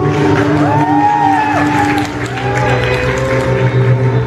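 Dance music with an audience cheering and clapping over it, a few voices calling out in long rising-and-falling cries in the first half and the middle.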